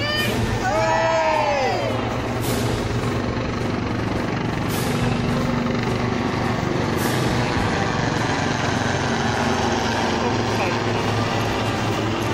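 Background sound of an outdoor crowd of spectators with a low steady hum. Near the start come two pitched calls, each rising and then falling in pitch.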